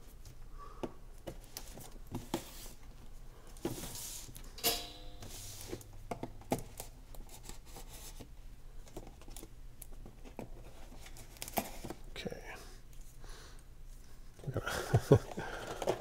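A pocket knife slitting the seals on a cardboard board-game box, then scattered rustles, scrapes and taps as the box is handled and its lid lifted off. A brief louder rip about five seconds in.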